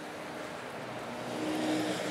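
A motor vehicle going by in the background: a steady noise that grows louder in the second half, with a faint low hum coming in near the end.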